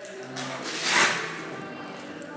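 A neoprene waist-trimmer belt being pulled open, its hook-and-loop fastening tearing apart in one short rip about a second in, over quiet background music.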